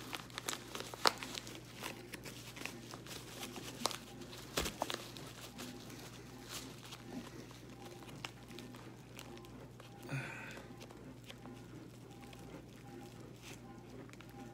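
Crumpled paper wrapping being crinkled and torn as it is pulled off a jar by hand, in irregular crackling rustles that are busiest in the first half and thin out later.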